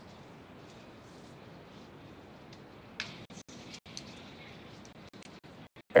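Faint, steady background hiss of a broadcast feed between call-outs, with a brief faint sound about three seconds in.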